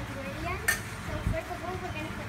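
A single sharp clink of kitchenware about two-thirds of a second in, then a soft knock, as a bowl of garlic is set down and a metal wok ladle is taken up.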